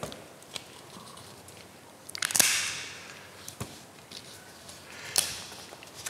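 Sticker sheets and paper handled on a craft table: a short rustle, like a sticker being peeled off its backing, a little over two seconds in, with a few small sharp clicks and taps between.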